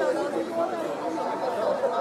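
Several people chatting at once, overlapping voices with no single clear speaker.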